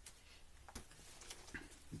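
Near silence, with faint rustling and a couple of soft knocks as a picture book is picked up from a pile.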